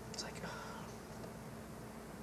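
A man's faint breathy whisper, a short hiss in the first half-second, then room tone.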